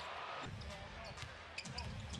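A basketball being dribbled on a hardwood arena court, over arena crowd noise, with short high squeaks.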